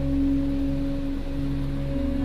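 Calm meditation music of steady, sustained ringing tones like a singing bowl, held over a low hum. Softer higher tones join near the end.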